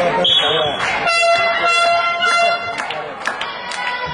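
A short, high whistle blast, typical of a referee signalling a penalty shot to start, followed about a second in by a long horn blast with several overtones, held for nearly two seconds. Crowd chatter runs underneath.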